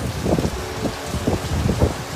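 Rain pouring down: a steady hiss with irregular low thumps.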